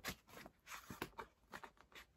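Faint rustling and light taps of a paperback book handled in the hands, its cover, flap and pages moving, in a string of short soft clicks.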